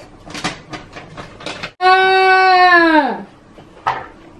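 A boy's long, wordless held vocal "aah", steady for about a second and then sliding down in pitch, preceded by a few light clicks of small plastic toy pieces being handled and fitted together.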